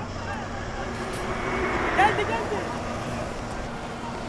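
Busy open-air din of many voices over a steady low hum from a ride-on floor-scrubbing machine, with one short loud call from a voice about halfway through.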